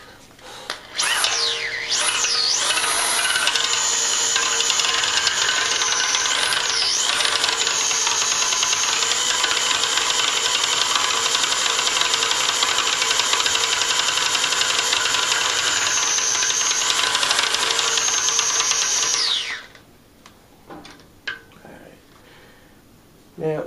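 Corded electric drill spinning a degassing wand in a glass carboy of wine, stirring out carbon dioxide and stirring up the sediment. It starts about a second in and runs at a steady, loud whine, dipping and picking up speed a few times. Near the end it winds down and stops, followed by a few small clicks.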